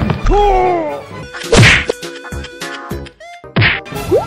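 Slapstick whack sound effects for a plastic chair striking a person, several hits with the loudest about one and a half seconds in and another near the end, with sliding cartoon-like tones between them.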